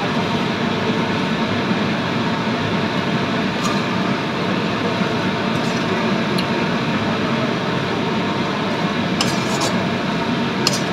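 Steady hiss of noodles stir-frying in a wok on a gas stove, with a few light clinks of the metal spatula against the wok about four seconds in and again near the end.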